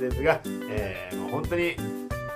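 A man's voice over steady background music.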